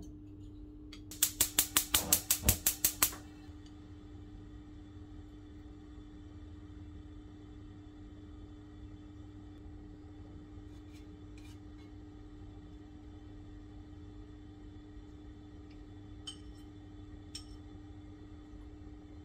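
Gas hob spark igniter clicking rapidly, about ten sharp clicks at some five a second for two seconds, as the burner is lit. After that a faint steady hum, with a few light clicks near the end.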